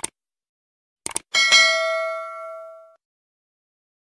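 Subscribe-button animation sound effect: a mouse click, a quick double click about a second in, then a notification-bell ding that rings out and fades over about a second and a half.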